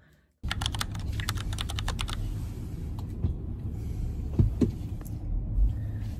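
Car cabin noise: a steady low rumble that starts about half a second in, with a quick run of sharp clicking taps over the next second and a half and a few single clicks later.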